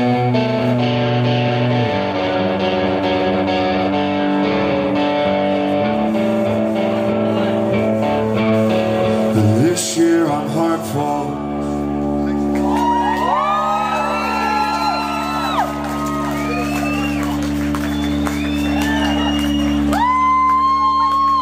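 Live rock band with electric guitar and drums playing loudly: strummed chords that change every couple of seconds, then about halfway through the chords give way to a held ringing drone with wavering, gliding high tones over it.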